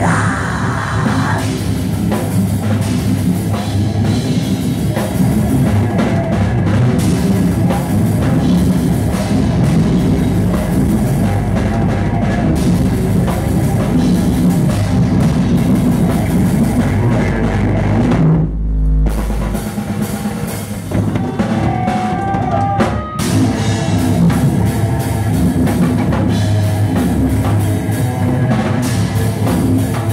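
Live death metal band playing loudly: fast drum kit with bass drum under distorted electric guitar. About two-thirds of the way through, the music drops out briefly to a lone low note before the full band comes back in.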